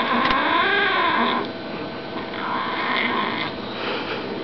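Bengal kitten growling in two long, wavering, drawn-out calls: the first runs on until about a second and a half in, and the second comes from about two and a half to three and a half seconds in.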